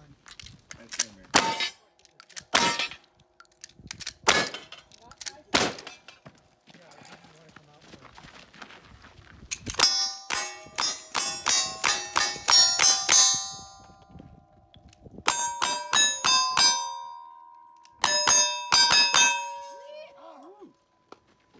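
Gunshots fired at steel plate targets in a cowboy action shooting stage. Single shots come a second or more apart at first, then fast strings of shots from about ten seconds in, each string followed by the ring of the struck steel plates.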